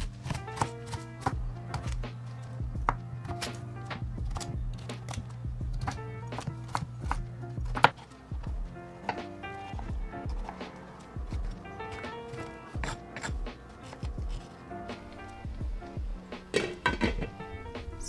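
Chef's knife chopping on a cutting board in irregular quick taps, first dicing a red onion and then, after a cut about eight seconds in, slicing tomatoes. Background music plays throughout.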